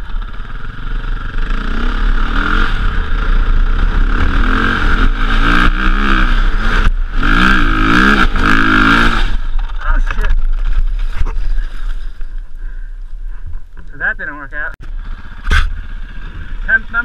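Dirt bike engine revving hard under load on a hill climb, its pitch rising and falling with the throttle, with a brief dip about seven seconds in. It drops back off after about nine seconds and runs quieter, and a sharp knock comes near the end.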